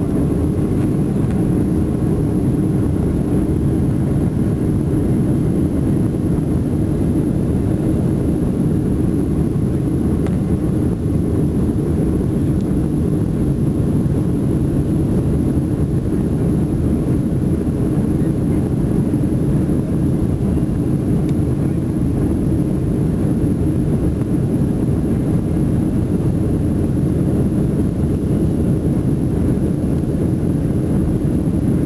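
Steady low roar of an airliner's jet engines and rushing air, heard from inside the passenger cabin in flight.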